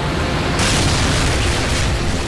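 Explosion sound effect in an animation: a deep, sustained boom with a hiss that grows brighter about half a second in.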